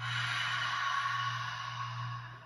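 A woman's long, breathy 'haaa' exhale through an open mouth, whispered rather than voiced: a yogic 'ha' breath, sighing the air out.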